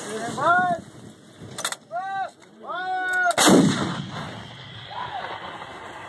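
M777 155 mm towed howitzer firing a single round: one sudden loud blast about three and a half seconds in that dies away over about a second. Short shouted calls come just before it.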